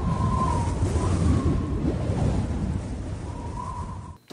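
Intro sound effect under a logo animation: a deep, noisy rumble with a faint high tone over it, easing off slightly near the end.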